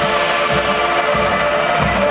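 High school marching band playing live: the winds hold sustained chords over a few deep drum hits.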